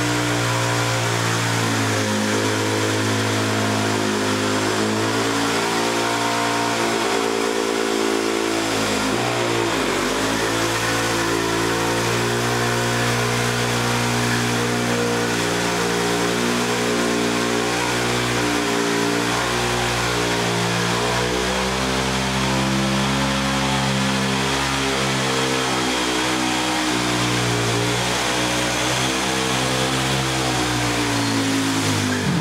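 Supermoto motorcycle doing a burnout: the engine is held at high revs while the rear tyre spins against the floor. The sound stays loud and steady, with the revs wavering and briefly dropping and picking back up about ten seconds in.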